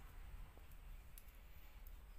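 Knitting needles clicking faintly a few times as stitches are worked, over a low steady hum.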